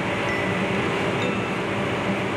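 Steady mechanical hum and hiss of background noise, like a nearby engine or ventilation running, with faint voices under it.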